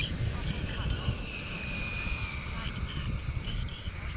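Wind rumbling on the microphone, with a faint, thin high whine that is clearest in the middle and dips slightly in pitch.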